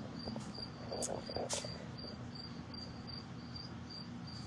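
A cricket chirping steadily, about three short high chirps a second, over a low steady hum, with a brief knock about a second and a half in.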